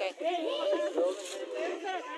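Several people talking over one another, with no single clear voice.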